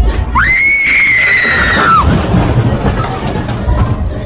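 A long, high-pitched scream that leaps up in pitch, holds, then falls away after about a second and a half, over fairground music and crowd noise.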